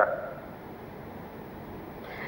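Faint steady hiss of room tone, with no other sound; a voice trails off at the very start.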